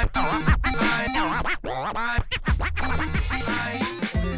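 Vinyl record scratched on a turntable over a hip-hop beat: quick swooping back-and-forth scratch sounds through the first couple of seconds, then a steady bass line comes in past the middle.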